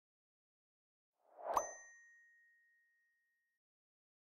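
A single bell-like ding sound effect: a short swelling rush ends in a bright strike about one and a half seconds in, and a clear ringing tone dies away over the next two seconds.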